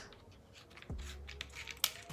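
Hands handling a plastic mini tripod's phone clamp: a few quiet clicks and taps, one about a second in and a sharper click near the end.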